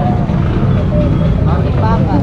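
Busy street-market ambience: nearby people's voices chattering over a steady low rumble.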